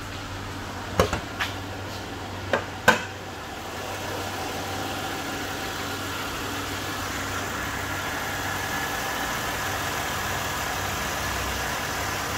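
A few sharp clicks and a clunk from the hood latch as the hood is released and raised, then the Buick 3800 Series III V6 idling steadily with the hood open, a little louder from about four seconds in. It runs evenly, a healthy-sounding idle.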